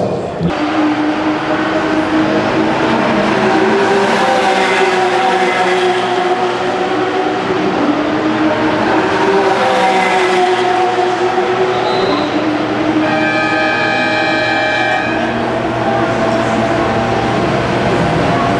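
Porsche Carrera Cup race cars' flat-six engines running at speed past the grandstand, a continuous loud engine sound whose tones shift in pitch, with a fuller burst of engine tones from about 13 to 15 seconds in.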